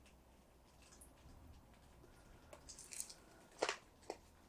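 Faint handling noises of gloved hands gripping and tilting a round canvas: small scrapes and ticks, a short scuffle near three seconds in, and one sharper click just after, over a low room hum.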